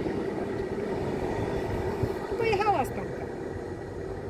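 PKP SM42 'Stonka' diesel-electric shunting locomotive running as it moves away, its engine drone slowly fading. A short pitched call sounds about two and a half seconds in.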